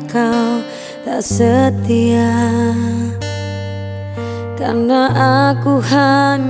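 Acoustic pop ballad: a woman singing over strummed acoustic guitar, with long sustained low notes underneath.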